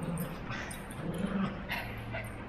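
Small dogs playing, with a dog giving two short, low whines, one at the very start and one about a second in.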